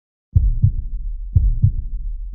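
Heartbeat sound effect: pairs of deep thumps, a quick lub-dub, repeating about once a second over a low hum. It starts about a third of a second in, after a moment of silence.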